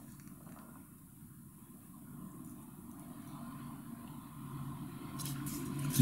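A faint low rumble that slowly swells over several seconds, with a light rustle near the end.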